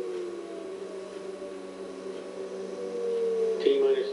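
A steady electrical hum with a faint higher tone above it. Twice, a tone slowly slides down in pitch, each time for about a second and a half. Near the end a man's voice starts speaking.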